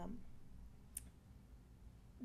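A pause in speech with quiet room tone and a single short, faint click about a second in.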